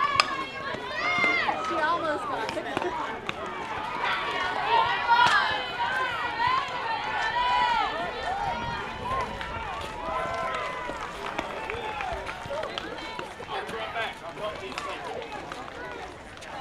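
A softball bat hits the ball with a sharp crack just after the start. Voices shout and yell for about ten seconds afterwards, then die down.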